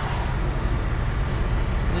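Steady rumble of a Volvo 780 semi truck's Cummins ISX diesel engine heard from inside the cab, mixed with tyre noise on wet pavement as the truck rolls slowly.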